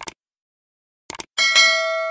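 A quick double mouse click, another double click about a second later, then a bright notification-bell ding that keeps ringing: the sound effects of a subscribe-button animation.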